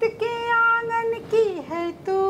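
A woman singing a Hindi lullaby, a single voice with no accompaniment, holding long steady notes; about one and a half seconds in the voice slides down to a lower note.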